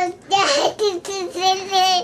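A toddler's voice in sing-song babbling, in a few short high-pitched phrases ending on a held note.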